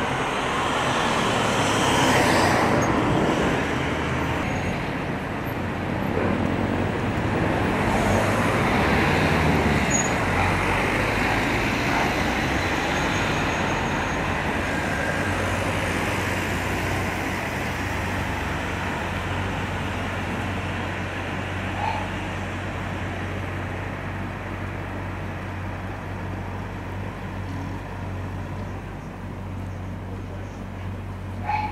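Steady outdoor background noise of road traffic with a low hum, swelling slightly a couple of times and easing off toward the end.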